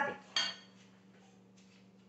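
Metal kitchen tongs set down with a single sharp clink and a short ring about a third of a second in, followed by a couple of faint light clicks over a low steady hum.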